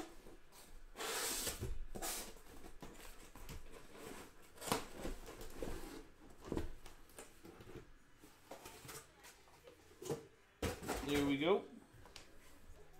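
A cardboard shipping case being handled open and shrink-wrapped card boxes slid out and stacked: cardboard scraping and rustling, plastic wrap crinkling, and a few light knocks of boxes being set down.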